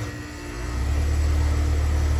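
Air-conditioner condensing unit's compressor starting up with a 5-2-1 Compressor Saver hard start kit (potential relay and start capacitor) wired in: a low hum that swells about half a second in and then runs steadily.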